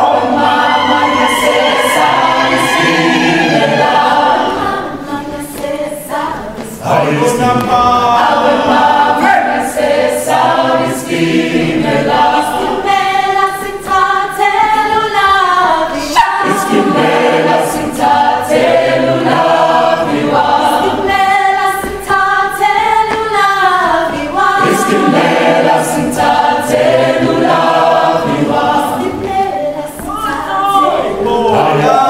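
A mixed choir of men's and women's voices singing in harmony, with a regular percussive beat underneath.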